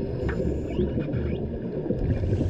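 Muffled underwater rumble of swimming-pool water heard through a submerged camera, steady and low, with a few faint higher squeaks or bubble sounds in the first second.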